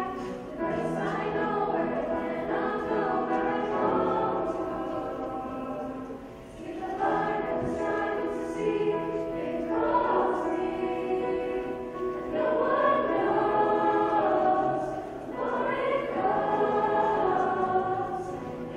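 Mixed-voice school choir singing sustained phrases together, with short breaks between phrases about six and fifteen seconds in.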